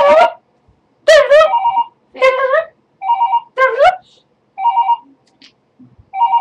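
An electronic ringing beep, three quick pips at a steady pitch repeating about every second and a half, between loud, high-pitched sliding vocal squeals from a girl.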